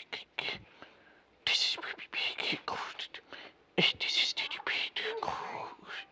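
A person whispering unintelligibly in two short stretches with a pause between.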